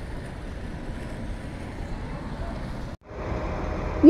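City street traffic noise with a low rumble of vehicle engines. It cuts off abruptly about three seconds in, and a quieter outdoor street ambience follows.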